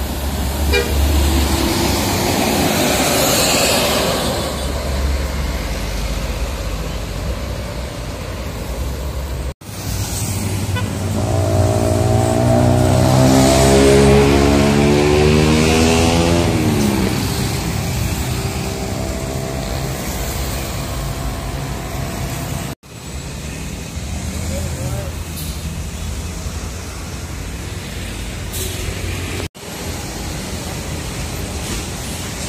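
Street traffic with a diesel intercity coach's engine passing close about midway, its drone swelling, then dropping in pitch as it goes by. Motorbikes run in the background.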